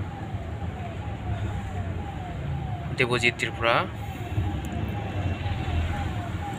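Low engine and road rumble inside a moving car's cabin, under a faint electronic siren-like tone that falls over and over, about two and a half times a second. A short burst of a person's voice comes about three seconds in.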